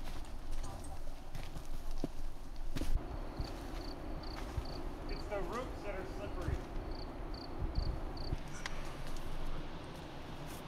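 Footsteps of hikers going down a steep dirt trail: irregular thumps and scuffs of feet on earth, roots and stones. A short high pip repeats about three times a second in two runs, once before the middle and once near the end.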